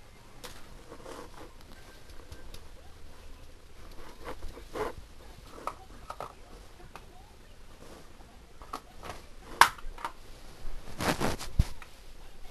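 Handling noise as things are moved about at close range: scattered rustles and clicks, a sharp click about two-thirds of the way through, and a quick run of louder rustling and knocks near the end.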